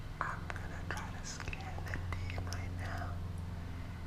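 A man whispering close to the microphone, in breathy, hissing bursts, over a steady low hum.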